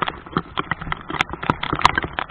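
Irregular sharp taps and small splashes of sea water and rain striking a waterproof camera housing held at the water's surface, several taps a second with uneven spacing.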